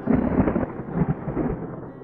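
A thunderclap sound effect: a loud rumble that breaks in at the start with several peaks and dies away about a second and a half in.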